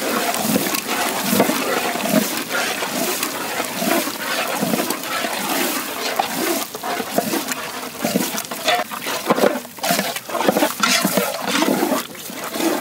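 Goat liver pieces frying and bubbling in hot spiced masala in a large cooking vessel, stirred with a wooden paddle, an irregular wet sizzle and gurgle.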